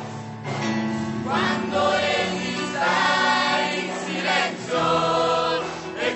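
Youth choir singing a gospel praise song over steady accompaniment, the voices swelling louder about a second in.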